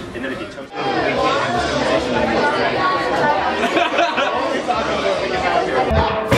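Several people chattering over one another, with a laugh about four seconds in; the voices grow louder about a second in.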